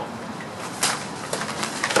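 Sparring swords striking in a freestyle fencing exchange: one loud hit just under a second in, then a quick run of sharper clacks near the end.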